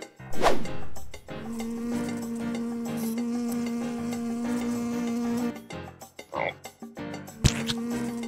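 A cartoon frog's croak: one long, steady, low croak held for about four seconds, starting about a second and a half in, and briefly again near the end. Just before it, at the start, a quick falling whistle-like sweep is the loudest sound.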